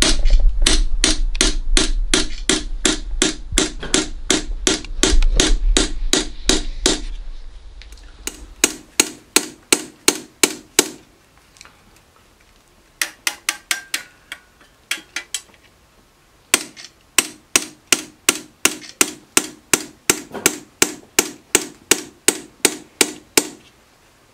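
A small hammer tapping a chisel into a copper plate, raising the teeth of a hand-made Japanese grater (oroshigane) one at a time. The taps come in quick, even runs of about four a second with short pauses between rows, over a low hum for the first seven seconds or so.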